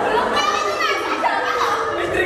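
Actors' voices on a stage, speaking loudly and excitedly with high, gliding pitches, carrying in a large hall.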